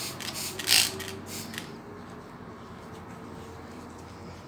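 Handling noise from gloved hands working over damp skin with a disposable wipe: a handful of brief, scratchy rustles in the first second and a half, the loudest just before a second in, then only a steady low background hum.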